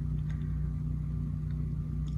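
A steady low machine hum, unchanging throughout.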